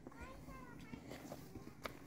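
A faint, distant high-pitched voice, like a child's, calls briefly in the first second, with a single sharp click a little before the end.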